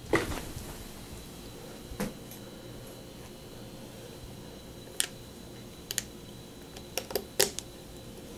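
Small scattered clicks and taps of plastic and metal shifter parts being handled and pressed into a SRAM Force 22 DoubleTap shifter body during reassembly, a few seconds apart with a quick cluster near the end, over a steady faint hum.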